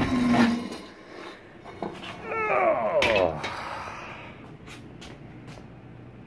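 A man's voice: a held sound trailing off at the start, then a short, sliding, falling vocal sound a couple of seconds in, with no clear words. A few faint clicks follow in the second half.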